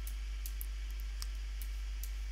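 A steady low electrical hum with a few faint, sharp clicks scattered through it.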